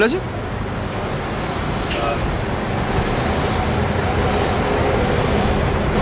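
Street traffic noise: a steady rumble of passing vehicles that grows a little louder through the middle.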